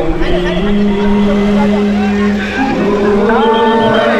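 A man's voice chanting in long held notes that slide up and down, over a low rumble of engines.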